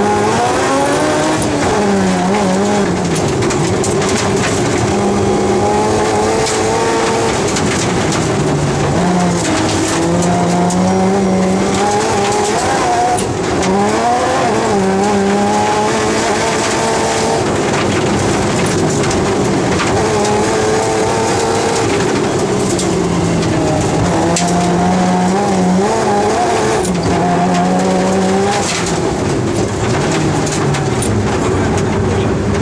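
Rally-prepared BMW M3 engine heard from inside the cabin, revving hard and dropping back again and again as the car is driven at speed through the gears and corners. Tyre and gravel noise runs underneath.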